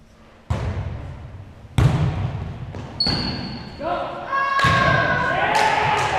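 A volleyball being struck and hitting the hardwood floor during play: about five sharp thuds that echo around a large gym, the loudest about two seconds in. Players' voices shout out in the second half.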